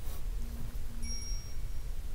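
A steady low hum of room tone, with faint short steady tones: a low one twice in the first half and a thin high one from about a second in until near the end.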